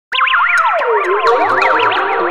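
Electronic intro music that starts abruptly: layered synthesizer tones swoop up and down in pitch, many at once, with a low sustained note coming in about halfway through.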